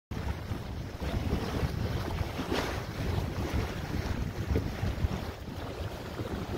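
Wind buffeting the microphone at the bow of a boat on open water, a low, irregular rumble with the wash of water beneath it.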